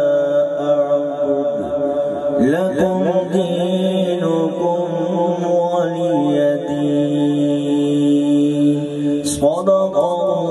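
A man's voice in melodic Quran recitation (tilawat) through a microphone and loudspeakers, holding long notes with slow ornamented turns and glides. There is a brief crackle near the end.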